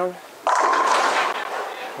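A Storm Nova bowling ball hitting a full rack of pins: a sudden crash about half a second in, followed by the pins clattering and ringing for about a second.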